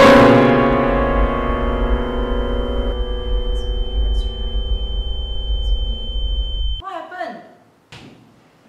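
Upright piano keys banged down together in frustration: a loud crash of many notes at once that rings and slowly dies away. Some notes drop out about three seconds in, and the rest cut off suddenly near the end, followed by a brief voice.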